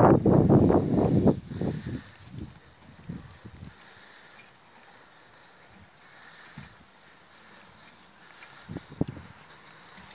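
A harnessed pony trotting on grass, pulling a small four-wheeled carriage: hoofbeats and the rattle of the carriage, loudest for the first couple of seconds as it passes close, then fading to a few faint knocks as it draws away.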